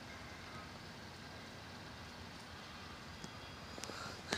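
Faint, steady low rumble of outdoor background noise, with no distinct events.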